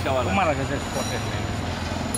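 A man's voice briefly at the start, then a steady low rumble of road traffic on the street.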